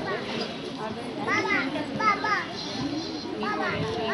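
Young children's voices chattering and calling out in high pitches, over a background murmur of other voices.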